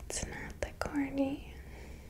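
A woman's soft whispering voice close to the microphone: a few sharp mouth clicks in the first second, then a brief hummed 'mm' about a second in.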